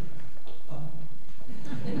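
A man's voice briefly, then a congregation breaking into laughter, which builds near the end.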